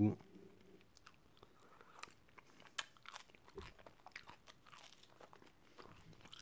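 Faint chewing and small mouth sounds of someone eating bread, with scattered light clicks, the sharpest a little under three seconds in.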